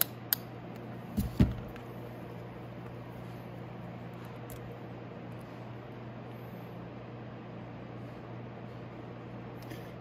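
Motomaster transformer battery charger running with a steady low hum. A couple of light clicks come at the start and a knock about a second and a half in.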